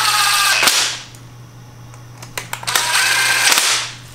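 Cordless impact driver running in two bursts, the first stopping just under a second in and the second from under three seconds in until near the end. It is driving the T25 screws that hold the retaining clip onto a fuel rail.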